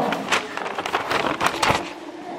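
Thin Bible pages being leafed through: a quick run of rustles and flicks that thins out near the end.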